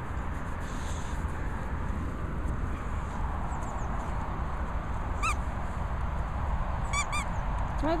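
A dog's squeaky toy squeaking three times, short and high: once about five seconds in, then twice in quick succession near the end, over a steady low rumble.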